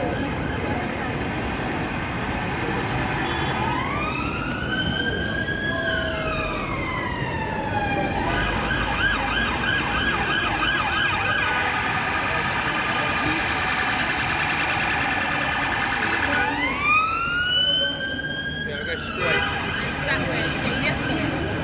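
An emergency vehicle's siren sounding over busy city street noise: a slow wail that rises and falls starting about four seconds in, a few seconds of fast warbling yelp, then another rising and falling wail near the end.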